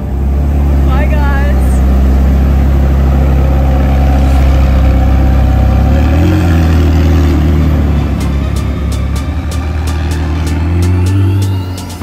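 McLaren 720S's twin-turbo V8 running at low revs as the car pulls away, a steady deep drone that rises briefly about halfway through and again near the end.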